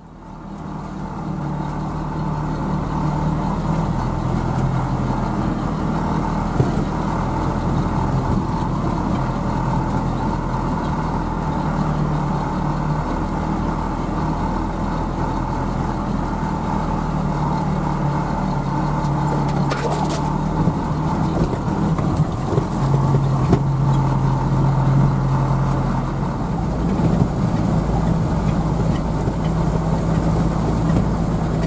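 UAZ flatbed truck's engine running under way, heard from inside the cab: a steady low drone whose pitch shifts a few times as it drives, with a thin whine above it. The sound fades in over the first couple of seconds.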